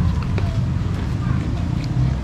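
Steady low background rumble with faint distant voices and a few light clicks.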